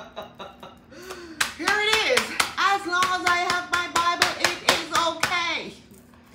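A woman's voice singing a tune in long held notes, with hand claps keeping time at about three a second. The claps start about a second and a half in and stop shortly before the end.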